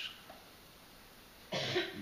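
A pause in room tone, then a single short cough about one and a half seconds in.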